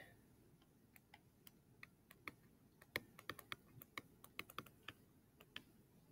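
Faint, irregular clicks and taps of a stylus on a tablet screen while an equation is handwritten, the taps bunched mostly in the middle.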